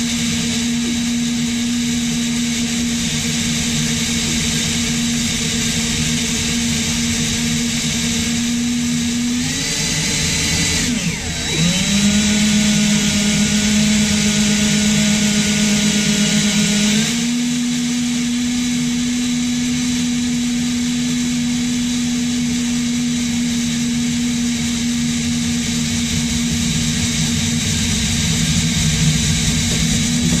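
Cordless drill running steadily, driving a 1/4-20 combination drill-and-tap bit into the Jeep's frame rail. About ten seconds in, its pitch dips and settles lower and louder for several seconds, then returns to the steady tone.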